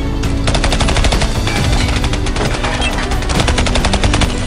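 Rapid automatic gunfire: a long unbroken burst of many shots a second, starting about half a second in, over a music soundtrack with steady held notes.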